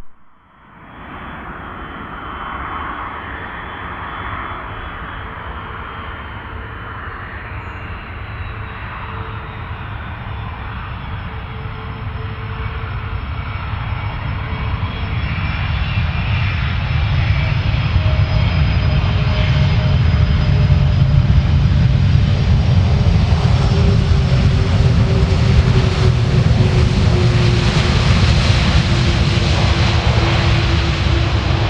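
Jet engines of a KLM Airbus A330-200 (General Electric CF6 turbofans) on landing. The roar starts faint and grows steadily louder as the airliner nears and passes. It is loudest in the second half, where a whine slowly drops in pitch.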